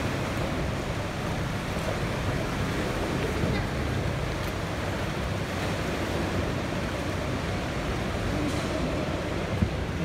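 Motor boat under way: a steady rush of water and engine noise.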